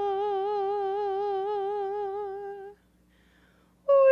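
A woman singing a sung prayer unaccompanied: one long held note with vibrato that ends a little past halfway, a brief pause, then the next phrase starting on a higher note near the end.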